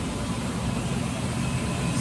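Steady low hum and fan noise from the running Okuma CNC machine's control cabinet and its cooling fans.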